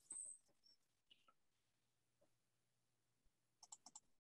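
Near silence, with a brief faint hiss at the start and a quick run of four or five faint clicks near the end.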